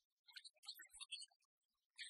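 Near silence with faint, scattered short clicks and crackle.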